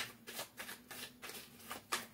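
Oracle card deck being shuffled by hand: a string of quick, irregular card flicks.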